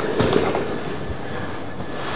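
Steam iron hissing steadily as it is lifted off wool trousers and stood on its heel on the ironing board, with cloth rustling under the hands.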